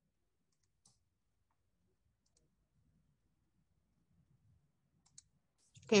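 Near silence with a few faint, short clicks spread through it, and a spoken "okay" at the very end.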